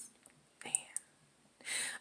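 Speech only: a woman says one soft, breathy word ("Man"), with a breathy sound just before the end.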